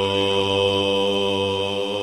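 Background music of a chanted mantra, a voice holding one long steady note.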